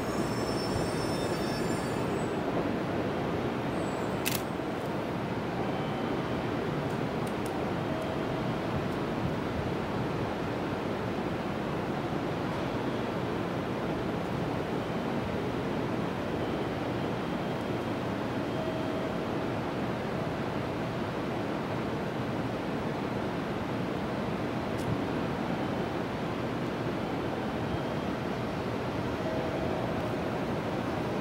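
Steady rumble and hiss of a distant JR Central 373 series electric train approaching along the track, still far off, with a sharp click about four seconds in.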